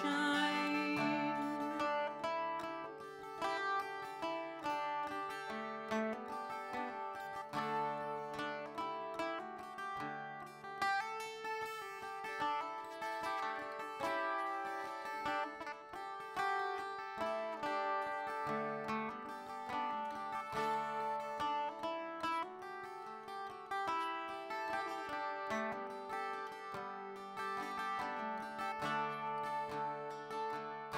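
Veillette twelve-string acoustic guitar playing an instrumental break, quick plucked notes over held lower notes.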